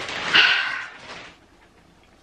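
Large cardboard box rubbing and scraping as it is lifted, with a short, higher-pitched sound about half a second in. The sound dies away to quiet after about a second.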